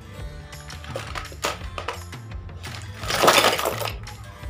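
Small skincare items clicking and clattering in a plastic basket as they are sorted by hand, with a louder rustling clatter about three seconds in as the basket is moved; background music plays underneath.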